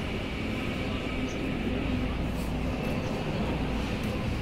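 Motorcycle engines idling steadily.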